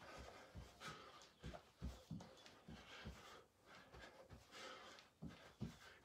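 Faint, soft thuds of feet in socks landing on a rug during in-and-out jumps, about two a second, with breathing between the landings.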